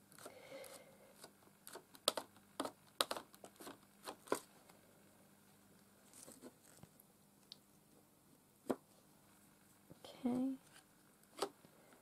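Faint, irregular clicks and crinkles of a foam makeup sponge dabbing paint through a thin plastic stencil. They come thick in the first few seconds, then only a few scattered ones as the stencil is lifted and set down again.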